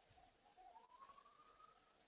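Near silence: room tone, with a faint tone that rises in pitch from about half a second in.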